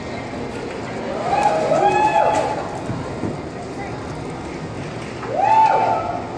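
People whooping and shouting encouragement, two long whoops that rise and then hold high, about a second in and again near the end, over crowd chatter in a large echoing arena hall.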